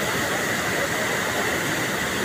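Waterfall rushing steadily, water pouring hard through a narrow rock channel as a continuous roar with no breaks.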